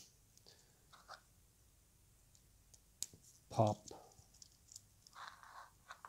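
Snap-fit plastic leg parts of a Zoids Wild Gusock kit being handled and pressed onto rods, with light clicks and one sharp snap about three seconds in as a leg pops into place.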